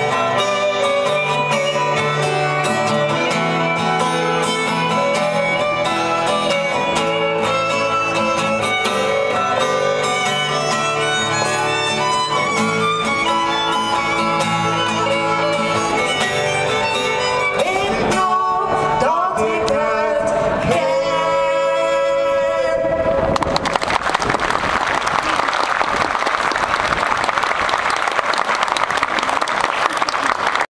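Live violin and acoustic guitar playing the close of a folk song. The violin slides in pitch, then holds a final note. About three quarters of the way in the music stops and audience applause takes over.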